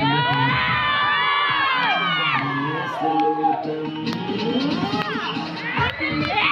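A crowd of students shouting and cheering, many high voices at once, most dense in the first two seconds or so, over dance music.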